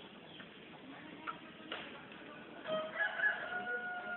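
A long, drawn-out animal call, held on one slightly falling pitch for about a second and a half, starting a little over two and a half seconds in, after a few light clicks.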